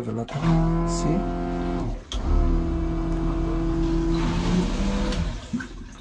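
Electric marine toilet's pump motor running in two runs, a short one of under two seconds and then a longer one of about three seconds: a steady hum over a low rumble.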